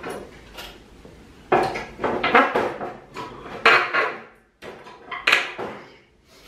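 A string of sharp metallic clinks and clatters as old nails are worked out of a pallet board with a hand tool and dropped into a tray of pulled nails.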